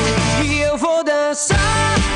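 Power-pop rock band playing with a male lead singer. About half a second in, the drums and bass drop out for a brief break, leaving only the held pitched lines. The full band crashes back in about a second later.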